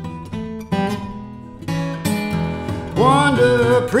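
Acoustic blues: an acoustic guitar plays between vocal lines. About three seconds in, a louder melody line comes in, sliding up and down in pitch.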